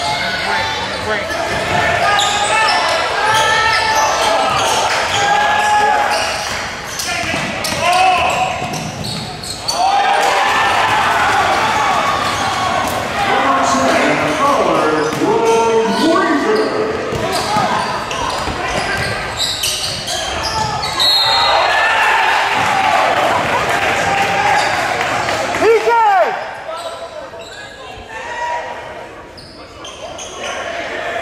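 Basketball game in a gym: a ball bouncing on the hardwood floor amid indistinct shouting from players and spectators, all echoing in the large hall. The sound drops quieter near the end as play stops.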